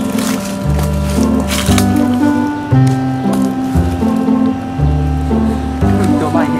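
Background music with a stepping bass line under held chords, and a few sharp percussion hits in the first two seconds.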